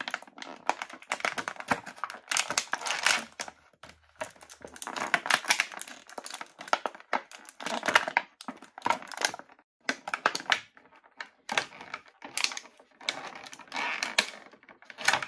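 Thin clear plastic blister tray crinkling and clicking in irregular bursts as an action figure is pulled out of it by hand.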